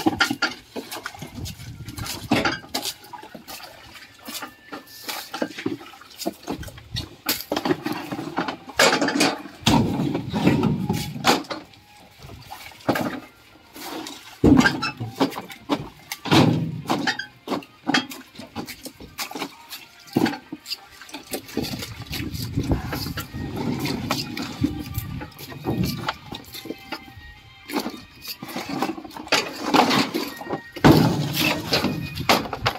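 Water sloshing and splashing in a tank as hands of green bananas are washed in it, with irregular knocks and clatter from the handling throughout.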